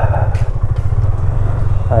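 A motor vehicle's engine running with a steady low rumble.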